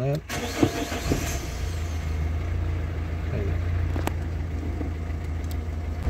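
Renault Clio III petrol or diesel engine being cranked and catching near the start, then settling into a steady idle.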